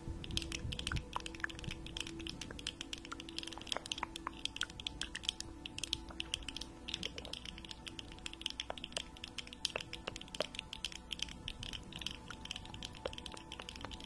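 Long acrylic nails clicking and tapping against each other, a rapid, irregular run of crisp clicks as an ASMR trigger.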